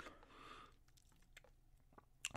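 Near silence: a faint soft hiss early on, then a few faint clicks about a second and a half in.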